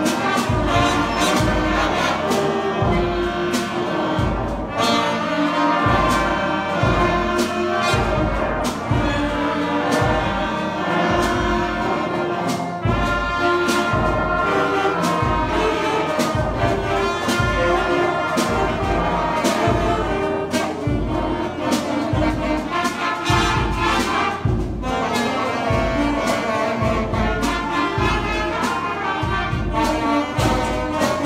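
Elementary school concert band playing, with brass and trombones over flutes and a steady drum beat.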